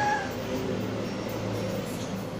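An infant's brief high-pitched squeal, falling in pitch, right at the start, over a low steady background hum.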